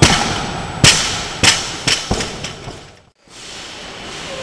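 Loaded barbell with rubber bumper plates dropped on a weightlifting platform after a snatch: a loud crash, then the bar bounces about five more times, each bounce coming sooner and fading. About three seconds in the sound cuts out abruptly.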